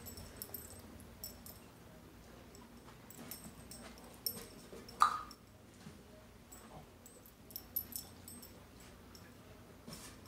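A dog moving around with the metal tag on its collar jingling in light, scattered clinks. One short sharp sound stands out about five seconds in.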